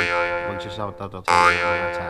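Background music of strummed acoustic guitar chords, two chords sounding about a second and a half apart and ringing on, under a man's voice.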